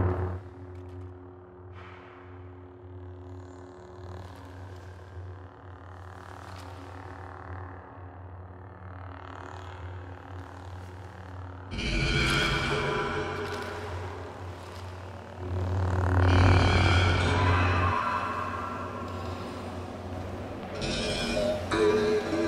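Dramatic film score: a low, steady drone for about twelve seconds, then sudden loud swells about twelve and sixteen seconds in, with another rise near the end.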